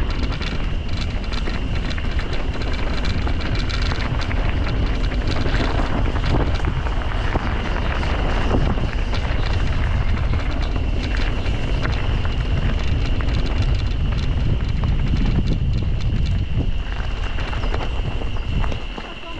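Wind rushing over the camera microphone of a mountain bike descending a gravel track, with the tyres crunching over loose stones and a dense clatter of small knocks from the bike. A steady high buzz runs underneath.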